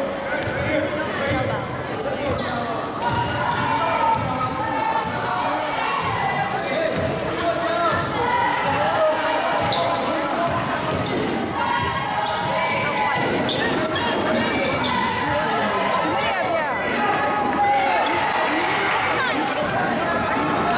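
A basketball being dribbled on a hardwood gym floor during play, repeated bounces echoing in the large hall, with spectators talking throughout.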